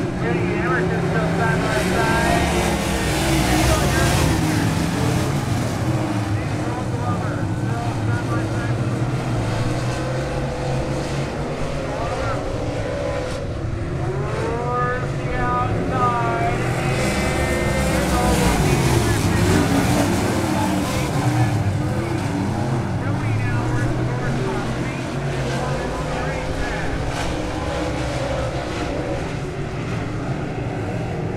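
A pack of dirt late model race cars running flat out on a dirt oval. Their V8 engines rise and fall in pitch as the cars go through the turns and pass by, loudest a little after halfway through.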